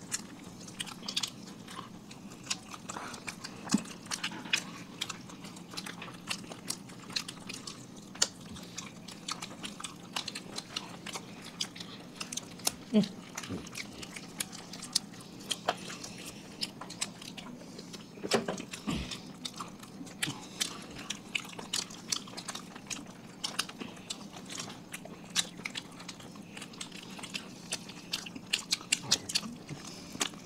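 Close-miked eating sounds of people biting and chewing spicy fried chicken drumsticks: irregular wet mouth clicks and lip smacks, many per second, with no pause throughout.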